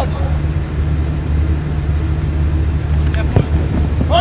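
Steady low rumble with faint distant voices, and a single sharp thud about three and a half seconds in: a football kicked for a corner.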